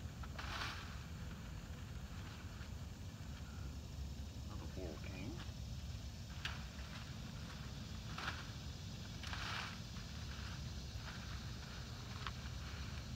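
Blackberry canes and leaves rustling as they are handled and pulled, with a few short snips of hand pruners cutting out old fruiting canes, over a steady low rumble.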